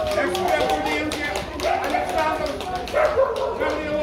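A dog barking over the steady talk of people around it.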